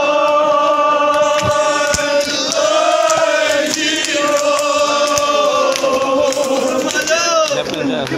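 A crowd of men chanting together in long, held notes, a religious group chant.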